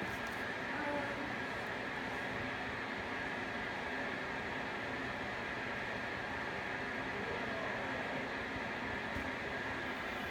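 Steady background hiss of room noise, even throughout, with no distinct event.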